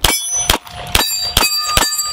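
A compact semi-automatic pistol fired in quick succession, about five shots in two seconds. Each shot is followed by steel targets ringing with a bell-like tone.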